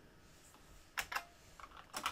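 Computer keyboard keystrokes: a few separate key clicks starting about a second in, with a couple more near the end.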